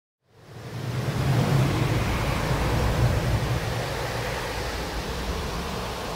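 Steady rushing wind, fading in over the first second and easing off slightly toward the end.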